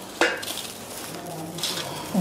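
Dried herb stems and leaves rustling and crackling as they are handled and lifted from a metal bowl, with one sharp clink against the bowl about a quarter of a second in.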